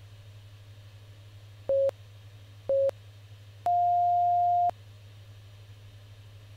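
Electronic interval-timer beeps: two short beeps about a second apart, then one longer, higher beep, counting down to and marking the end of the work interval and the start of the rest.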